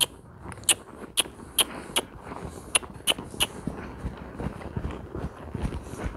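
A ridden horse trotting on arena sand. A string of sharp clicks comes about two to three a second through the first half, then softer, duller hoof thuds.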